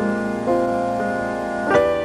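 Solo jazz piano: held chords that change about every half second, then a sharp, loud chord struck near the end.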